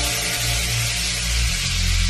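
Background electronic dance music in a quiet stretch without drums: a held deep bass note that changes pitch about one and a half seconds in, under a steady hiss.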